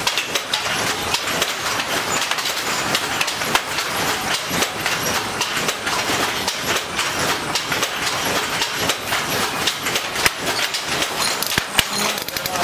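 Wooden hand loom clattering as it weaves: a steady, dense run of sharp clicks and knocks from the shuttle and the beater.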